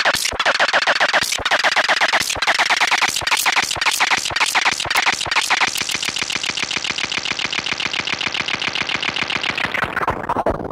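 Synthesizer notes run through a feedback delay whose delay time is being repitched, producing a rapid, glitchy stutter of repeats like a broken tape loop. About six seconds in, as the delay's update rate is switched to 1 kHz, the stutter turns into a finer, faster, more even buzz, and the sound changes again near the end.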